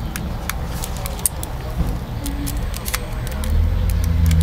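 A small plastic toy mobile phone being handled and set down, with a run of sharp, irregular clicks like its keys being pressed. A low rumble underneath grows louder near the end.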